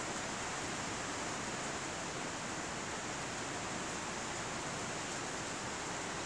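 Steady, even hiss of background noise, with nothing else heard.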